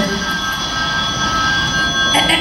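A telephone ringing, played as a stage sound effect: one steady, high ring lasting nearly two seconds.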